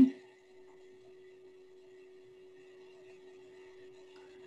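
A quiet pause on the conference call holding only a faint steady hum: one low tone, with a fainter high whine above it.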